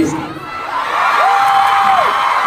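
Concert audience cheering and screaming. The noise swells about half a second in, and in the second half one voice holds a long high-pitched yell above it.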